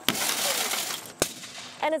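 A window of a burning car bursting from the heat: a sudden shattering burst that trails off in a hiss over about a second, with one more sharp crack a little after a second in.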